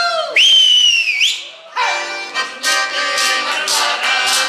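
A sung note slides down and ends. Then comes a loud, high whistle that rises and then slides down over about a second. From about two seconds in, accordion-led Russian folk music with voices and a regular beat takes up again.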